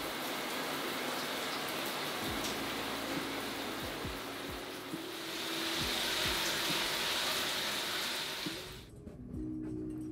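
Shower running: a steady hiss of water spray that swells in the second half and cuts off suddenly near the end.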